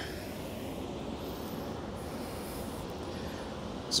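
Steady outdoor background noise, an even rushing sound with no distinct events, between two stretches of speech.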